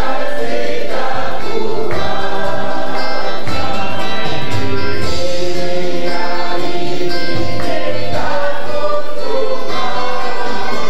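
Gospel worship music with a choir singing, loud and continuous.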